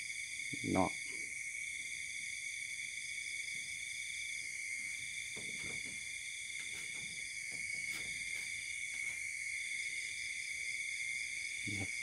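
Steady night-time chorus of crickets and other insects, ringing continuously at several high pitches, with one of the voices starting and stopping every second or two.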